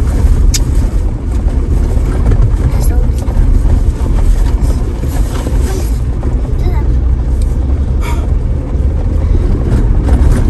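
A 4x4 driving steadily along a dirt and gravel trail: a continuous low rumble of engine, tyres and wind.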